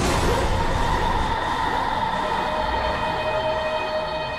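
A loud, steady rushing noise with a low rumble that starts suddenly, like a passing train. About halfway through, sustained high tones rise out of it and lead into a music drone.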